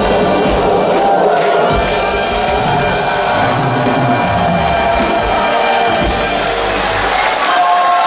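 A group of singers and a live band finishing a trot song, sung voices held over the drum beat, with the audience cheering. The drums and low end stop near the end.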